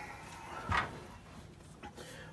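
Handling noise at the workbench: one short, dull knock about three-quarters of a second in, with a few faint clicks, as a part is set down and the engine is handled.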